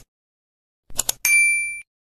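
A quick double mouse-click sound effect about a second in, followed at once by a bright notification-bell ding that rings for about half a second and cuts off.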